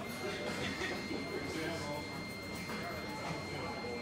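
Indistinct chatter of people in a large, echoing hall, with a steady high-pitched electronic tone that starts at the beginning and holds.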